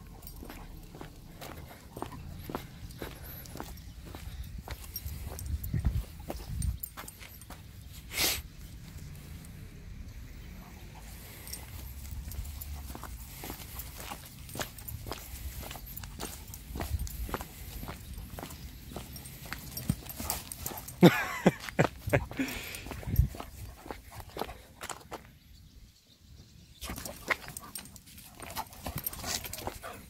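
A German Shepherd dog giving a few short vocal calls about two-thirds of the way through, over a steady patter of footsteps on a wet lane.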